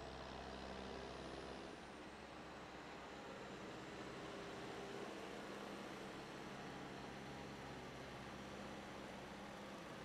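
Farm tractor's diesel engine running steadily and faintly as it tows a track-prep drag down the drag strip.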